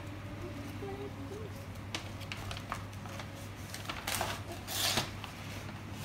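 Brown paper bag and plastic food packaging rustling and crinkling as a hand rummages inside, with the loudest crinkles about four and five seconds in.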